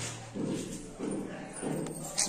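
Indistinct voices in short phrases.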